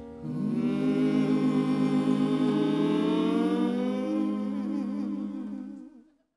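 Several voices holding a long, slow closing chord in harmony, with vibrato, ending a song; the sound cuts off just before the end.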